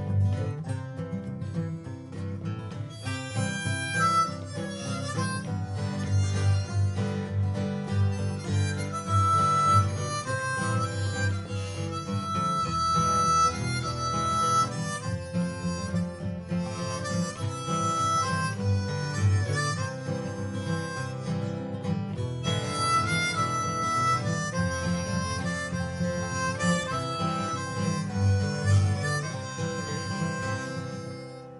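Acoustic guitars strumming and picking an accompaniment, with a harmonica playing the lead melody from about three seconds in.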